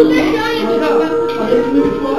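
Music with a long held tone, with people's voices talking over it.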